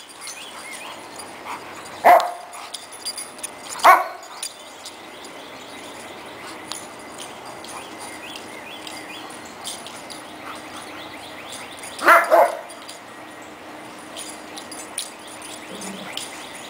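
Dogs barking while playing: a single sharp bark about two seconds in, another about four seconds in, and a quick double bark about twelve seconds in.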